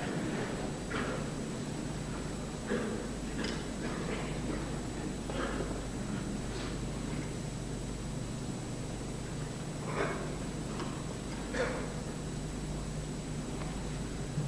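Quiet hall room tone under the steady low hum of an old television recording, with a few faint short sounds from the hall, the plainest about ten seconds in and again a second and a half later.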